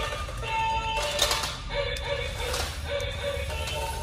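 Music with a simple melody, with two short electronic dog-bark sounds from a toy robot puppy about a second in and again about two and a half seconds in.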